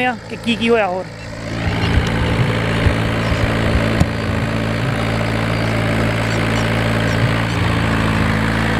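Farm tractor's diesel engine running steadily under load as it pulls a puddling implement through a flooded paddy field, with a few light knocks.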